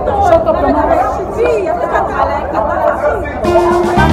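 Several people talking over loud music with a steady bass, in a large, crowded hall. A held musical note comes in near the end.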